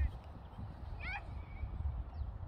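Low rumble of wind on the microphone, with one short, high-pitched distant shout from a player on the pitch about a second in.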